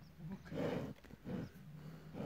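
A bull with its head down in the soil, giving a run of low, rough grunts, about three in quick succession, the first full one the loudest.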